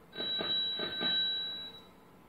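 Bicycle bell ringing: about three quick strikes over a high ringing tone that lasts about a second and a half, played as a slide's sound effect as a bicycle picture appears.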